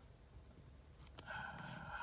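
Quiet car-cabin room tone with a single faint click a little over a second in, followed by a faint steady sound near the end.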